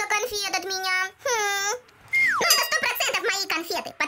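A young child's wordless vocal sounds, with one long held note about a second in, and a quick falling whistle-like tone just past the middle.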